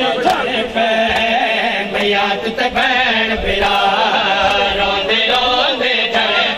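Crowd of male mourners chanting a noha together, with sharp slaps of hands striking bare chests in matam mixed in at irregular moments.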